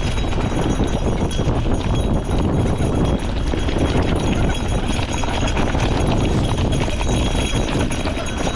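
Gravel bike rolling downhill over a rocky dirt trail: tyres crunching over loose stones and the bike rattling with a constant stream of small knocks, over a steady rumble of wind on the microphone.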